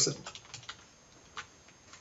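A handful of separate keystrokes on a computer keyboard, short faint clicks spread out with pauses between them.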